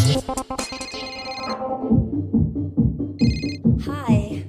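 Electronic dance music from a DJ mix. The pounding kick drum drops out at the start, leaving ringing synth tones that fade away. A new, lighter beat comes in about two seconds in, with a short, high electronic beeping tone near the end.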